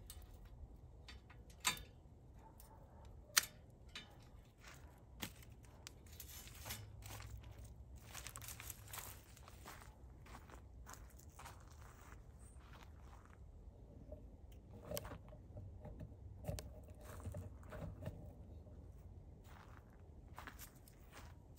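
Hand pruning shears snipping withered, dried-out hyacinth bean vines on a wire trellis, with two sharp snips about two and three seconds in. Crackling rustles of the dry stems and leaves follow as the vines are cut and pulled.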